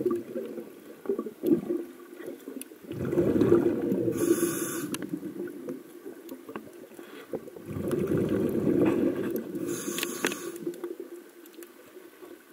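Scuba diver's breathing through a regulator underwater: two long bubbly exhalations about five seconds apart, each with a brief hiss from the regulator.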